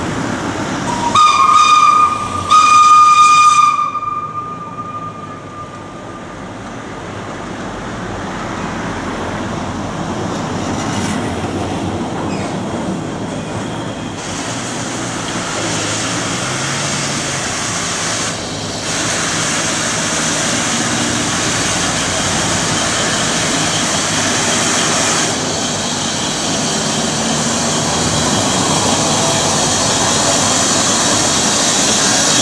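Metre-gauge 030+030 Mallet tank steam locomotive No. 403 sounding two steady whistle blasts of about a second each, just after the start. Then its steam hiss and rolling noise grow steadily louder as it approaches.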